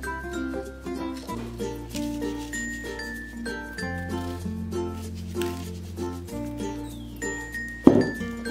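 Background music with sustained bell-like melody notes over a bass line that changes every two or three seconds. A single sharp click sounds just before the end.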